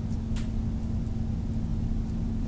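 Steady electrical hum with one constant low tone over a low rumble, the background noise of a screen-recording setup, with one faint click about half a second in.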